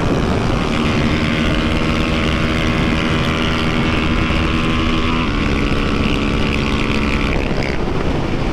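Honda CB300F Twister single-cylinder engine with a tuned camshaft, running hard at high, steady revs at about 150 km/h, under heavy wind and road rush. The engine note dips slightly about five seconds in and drops away near the end.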